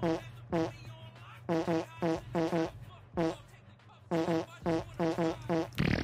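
The same short pitched sample played over and over as a loose, homemade beat, about sixteen identical blips with a brief pause past the middle. A low steady hum runs underneath.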